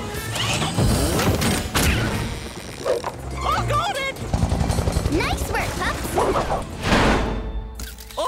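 Cartoon soundtrack: music playing under short vocal sounds from the characters, with a whooshing rush near the end.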